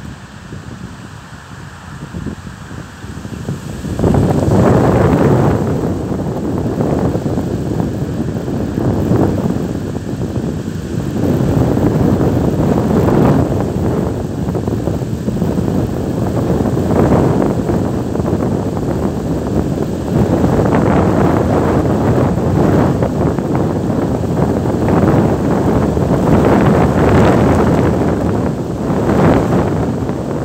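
Strong, gusty wind buffeting the microphone, with reeds rustling. It jumps up sharply about four seconds in and then keeps coming in uneven gusts.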